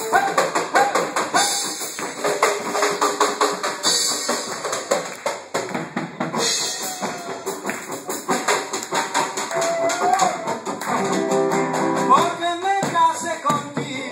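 A live folk band playing: a drum kit and a large rope-tensioned hand drum keep a steady beat under electric and acoustic guitars.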